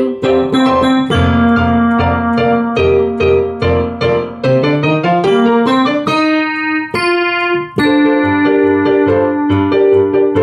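Piano accompaniment playing repeated chords over a rising bass line, with a long held chord just after the middle.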